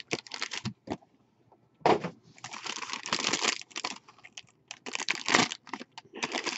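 Foil wrapper of a trading-card pack being torn open and crinkled by hand, in irregular bursts: a short one at the start, a longer one from about two seconds in, and another near the end.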